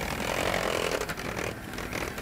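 Electric hand mixer running steadily, its beaters whipping whipped-cream mix in a steel bowl.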